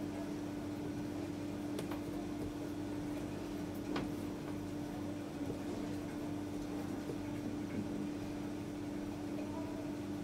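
A steady low hum, with a few faint light clicks from a metal offset spatula as chocolate ganache is spread over a cake.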